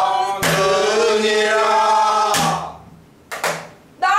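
A woman singing pansori, holding one long note with a wavering pitch, while keeping time on a buk barrel drum. Drum strokes fall as the note begins and as it breaks off about two seconds later, followed by two quick strokes near the end.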